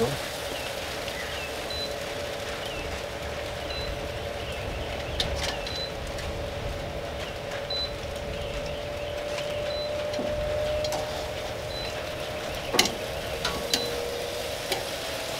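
Chicken quarters sizzling as they are laid on the hot grates of a Masterbuilt Gravity Series 560 charcoal smoker, over the steady hum of its fan. Metal tongs click against the grate a few times, loudest near the end.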